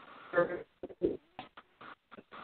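Telephone-line audio breaking up: short, garbled fragments of a voice cutting in and out between dropouts, the sign of a poor call connection.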